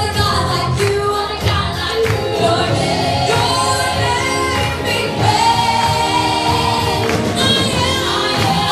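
Church worship team singing a gospel worship song together over live band accompaniment, with a long held sung note about five seconds in.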